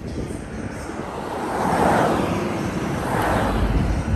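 Road and wind noise heard from inside a moving car: a steady rumble and rush that swells about halfway through and again near the end.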